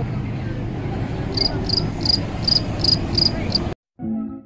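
Chirping insect, a run of short high chirps about three a second, over a steady rushing background noise; all of it cuts off abruptly just before the end.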